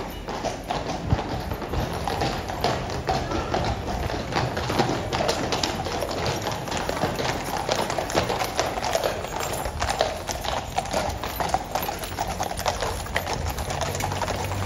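Horses of a mounted cavalry column clip-clopping at a walk on stone paving, many hooves striking in a dense, overlapping, uneven patter.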